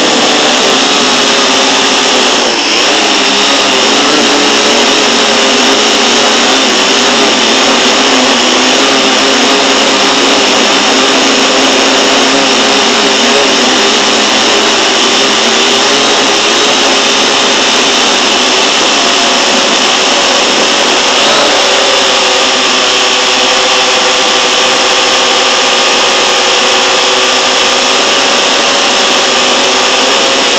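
Multirotor drone's electric motors and propellers whining steadily, heard loud through the drone's own onboard camera. The pitch dips briefly about two and a half seconds in and steps up around twenty-one seconds in as the throttle changes during the descent toward the ground.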